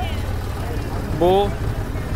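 Tractor engine running steadily, a low, even pulsing drone, with one short spoken word over it about a second in.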